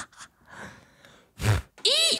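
A man making wordless vocal sounds: soft breaths and a faint gasp, then a short loud grunt about one and a half seconds in. Just before the end come high-pitched yelps, each rising and falling in pitch.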